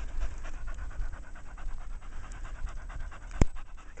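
Cocker spaniel panting in quick, steady breaths close to the microphone. A single sharp click about three and a half seconds in.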